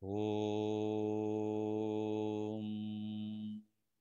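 A man's voice chanting a single long "Om" on one steady low note. About two and a half seconds in the vowel closes toward the hummed "m", and the chant stops sharply after about three and a half seconds.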